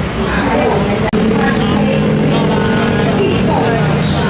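A car passing on the road, its engine note falling as it goes by, over a steady din of traffic and crowd voices. The sound cuts out briefly about a second in.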